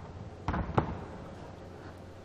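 Two sharp thumps about a third of a second apart as a grappler's body hits the mat, followed by a steady low hum.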